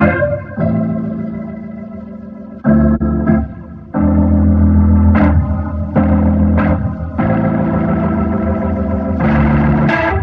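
Electric piano chords played through a Leslie-style rotary speaker plugin (UADx Waterfall Rotary Speaker), taking on an organ-like rotary colour, with the drive control adding some distortion. The chords change every second or so, with one held chord fading away in the first couple of seconds.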